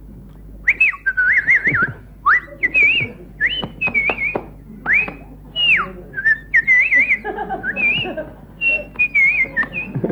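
A man whistling short, warbling phrases that swoop up and down, broken by sharp clicks, as part of a wordless comic sketch.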